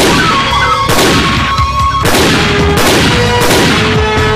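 Film soundtrack: a string of loud, sharp bangs, roughly one every half second to a second, each ringing out, over background music with held tones.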